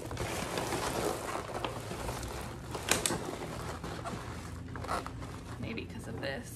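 Black plastic trash bag rustling and crinkling as gloved hands dig through it, with a sharp knock about three seconds in.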